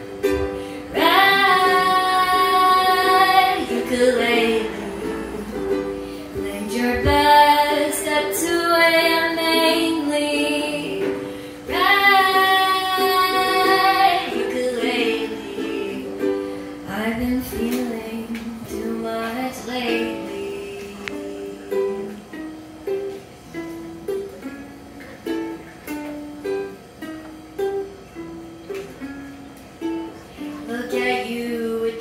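A ukulele played live with a woman singing long held notes over it in the first half, three sustained phrases. After that the ukulele carries on alone, picking single notes in a steady rhythm of about two a second.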